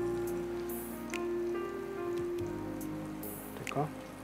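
Green chillies crackling in hot oil in a frying pan as they are lifted out, with a few light clicks of metal tongs, over background music with held tones.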